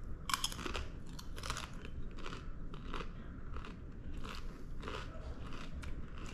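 A person biting into and chewing a crisp chip topped with crab dip, with irregular crunches about two or three times a second.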